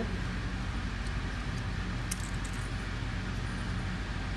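A steady low hum with a light metallic click about two seconds in, from mechanical seal parts being handled and pushed into place.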